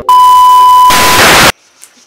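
TV colour-bar test-pattern sound effect, very loud: a steady test-tone beep over TV static hiss. The beep stops just under a second in, and the static cuts off suddenly about half a second later.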